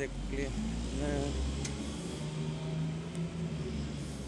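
Low, steady rumble of motor traffic on a street, with a few brief words from a voice in the first second or so.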